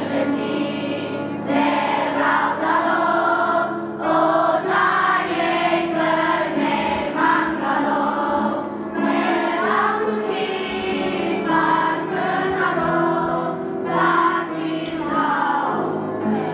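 A choir of schoolchildren singing a slow song in unison.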